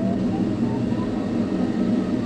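Steady rush of air over the canopy of an ASW 27 sailplane, heard inside the closed cockpit while it circles in a thermal.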